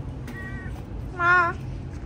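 A cat meowing twice: a short faint meow, then a louder, wavering meow a little over a second in.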